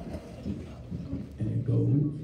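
Electric archtop guitar starting the intro: a few short low plucked notes, then a louder sustained low note or chord near the end.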